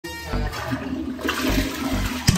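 Tank toilet flushing, water rushing and swirling down the bowl.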